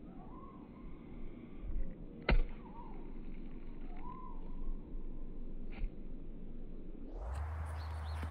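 A soccer ball coming down from a kick over a playground: a sharp thud as it lands, about two seconds in, and a lighter knock near six seconds. Three short chirping bird calls sound in the background.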